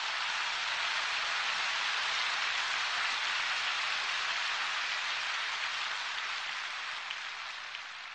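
A large audience applauding steadily, the clapping dying away near the end.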